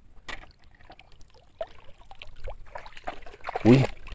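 Light clicks and knocks of plastic toy vehicles being handled and dropped into a plastic bucket. A short voiced exclamation comes near the end.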